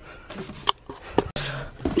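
Handling noises as a hand rummages on a shelf: several sharp clicks and knocks over a low rustle, as small items are picked up and moved.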